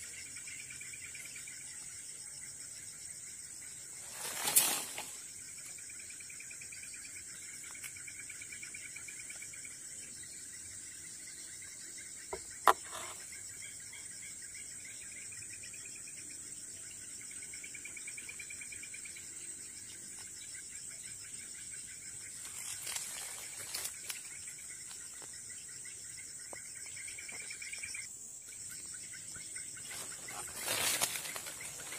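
Forest insects calling: a steady high-pitched buzz with a lower, wavering trill beneath it that stops near the end. A few short noises and one sharp click break in, the loudest noise about four seconds in.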